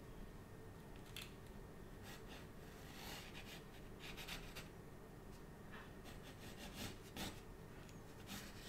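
Pencil sketching on rough watercolour paper: a series of short, faint scratchy strokes, the strongest near the end.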